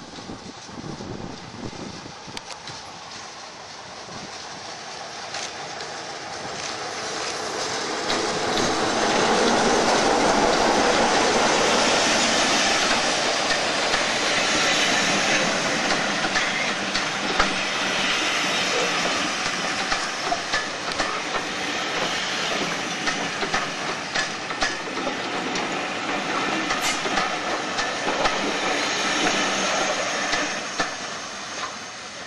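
BR Class 33 diesel locomotive with its Sulzer eight-cylinder engine approaching and passing close by. It grows louder to a peak about ten seconds in, then the coaches roll past with their wheels clicking over the rail joints.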